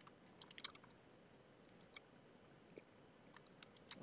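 Faint computer keyboard keystrokes, a quick run of taps in the first second and a few scattered ones after, over near-silent room tone.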